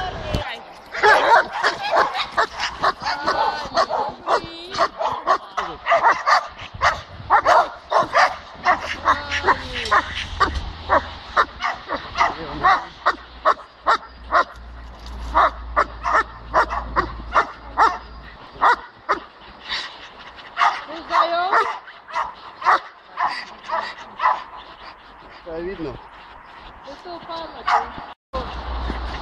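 A dog barking over and over, a few barks a second, with yips and whines mixed in, as it is worked on a leash in protection (bite-work) training; the barking thins out briefly near the end.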